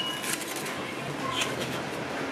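Restaurant room noise: a steady murmur with faint background voices and a few light clicks of tableware.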